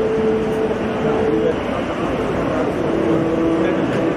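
A voice chanting in long held notes, the first held for about a second and a half and a lower one about three seconds in, over a dense steady noise.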